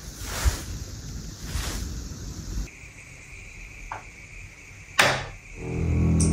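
A single sharp knock about five seconds in, standing out over a quiet background with two soft rushes of noise in the first couple of seconds.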